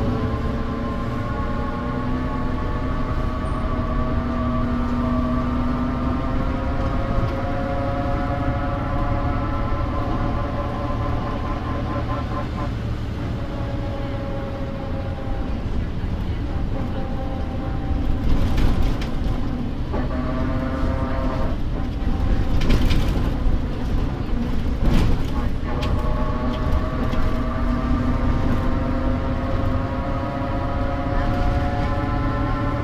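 Inside a 1992 Mercedes-Benz O405 city bus under way: a whining drivetrain tone rising slowly in pitch over the low rumble of the diesel, fading out and coming back a few times. Clusters of sharp rattles and knocks come through in the middle.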